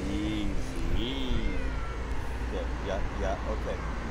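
Two stray tabby cats yowling at each other in a standoff: two long, low, wavering yowls in the first second and a half, then a few shorter cries. A steady traffic rumble runs underneath.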